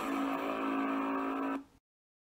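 A single steady, buzzy electronic tone from an end-card sting, held at one pitch without change, stopping about one and a half seconds in.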